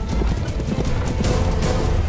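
A horse's hooves clopping in a steady run as it draws a cart, with the cart rumbling along, over background music.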